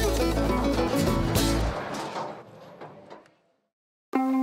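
Background music with a strong bass line that fades out over the second half, ending in silence.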